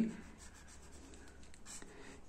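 Felt-tip marker drawing on paper: a quick run of faint, short strokes as a zigzag resistor symbol is drawn.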